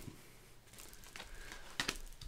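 Faint handling of a tarot deck: a few soft taps and rustles of cards, with a slightly sharper click near the end.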